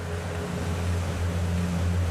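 A low, steady hum, with a faint higher tone that fades out in the first half second.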